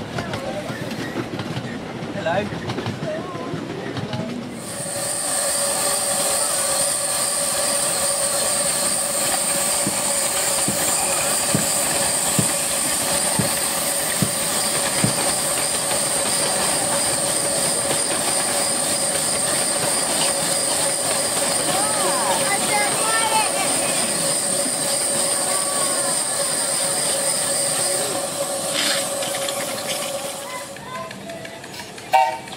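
Miniature steam locomotive blowing off steam: from about five seconds in, a steady hiss with a ringing whine, which stops shortly before the end. Before it, wheels click over the rail joints.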